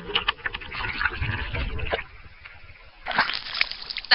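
Muffled underwater bubbling and crackling in a swimming pool, heard through a waterproof camera held under the water. About three seconds in, a loud splash of water as the camera and swimmer break the surface.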